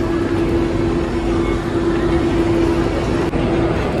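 Steady rushing background noise of a shop interior, with a constant mid-pitched hum that stops shortly before the end and an abrupt change in the sound about three seconds in.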